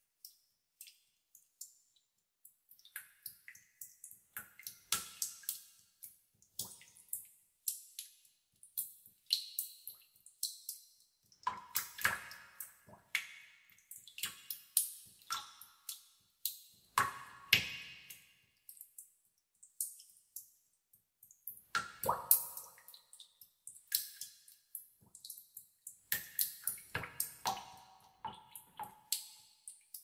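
Water drops dripping into a pool inside a cave, each a sharp plink with a short echoing ring, some with a brief pitch. They fall irregularly, sometimes singly and sometimes in quick clusters of several a second.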